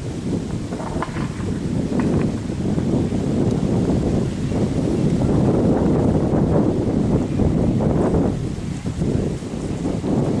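Wind buffeting the camera microphone: a loud, irregular low rumble that swells through the middle.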